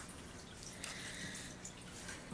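Low room tone with a few faint, soft clicks.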